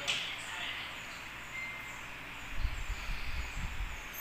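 Handling noise from a paper instruction manual held up to a phone camera: a short crinkle of paper right at the start, then irregular low rumbling bumps through the second half as the phone and page are moved.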